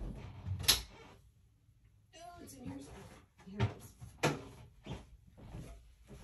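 Rummaging through storage: several sharp knocks and clatters as objects are moved and handled while a tin is searched for, with a quiet gap in between.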